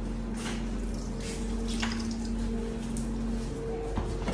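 Water running from a tap into a small plastic jug that is being rinsed out at a sink, with some splashing. A steady hum sits underneath.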